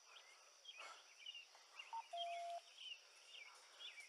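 Faint outdoor ambience: short bird chirps scattered throughout over a steady high insect drone, with one short steady whistle-like tone a little after two seconds in.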